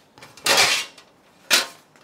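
A metal baking tray being picked up and handled: a short scraping rush about half a second in, then a sharp clatter about one and a half seconds in.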